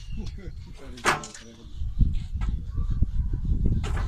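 A large catfish being handled on a steel platform scale: low thuds and knocks against the metal platform, with a dense low rumble from about two seconds in. A brief voice about a second in.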